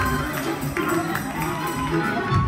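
Live church band music: keyboards over a drum kit, with regular percussion hits.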